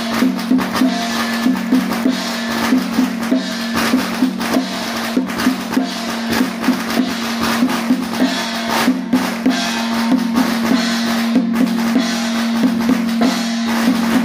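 Temple ritual percussion: a drum beaten in a fast, steady rhythm of about three strokes a second, with cymbals sounding over it.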